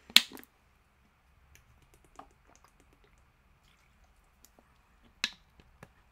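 Plastic water bottle being handled and drunk from: a couple of sharp crackling clicks at the start, scattered faint ticks while drinking, and another click about five seconds in.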